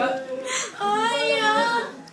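A person imitating a newborn baby's cry: a short breathy sound, then one wavering wail lasting about a second.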